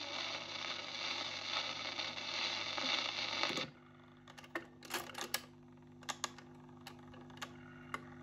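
The record playing through the Dansette's speaker cuts off abruptly a little over three seconds in. The changer mechanism then clicks and clunks as the tonearm lifts and swings back to its rest, over the steady hum of the turntable motor.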